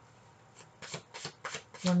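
Tarot cards being shuffled by hand: a quick run of short, crisp shuffling strokes that starts about half a second in.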